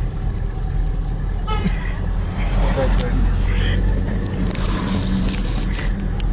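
Steady low rumble of a moving vehicle in traffic, with people's voices heard over it at times.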